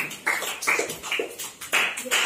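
Hand claps in a small room, separate claps roughly two a second.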